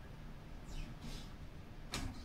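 Quiet room tone with a faint swish about halfway through and a short sharp click near the end, from whiteboard markers being handled.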